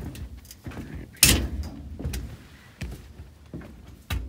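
Footsteps on the plank decking of a gangway down to a dock, a step about every two-thirds of a second, the heaviest one a little over a second in.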